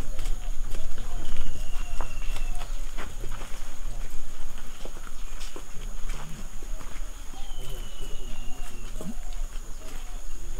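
Indistinct talk of several people in the background, with scattered clicks and footsteps on dirt over a steady low rumble. Two faint falling whistles come about a second and a half in and again near the end.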